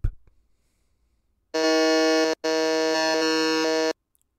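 Electronic game-show buzzer sounding twice: a short buzz about a second and a half in, then a longer one after a brief break, each a steady flat tone. It marks a player buzzing in to answer.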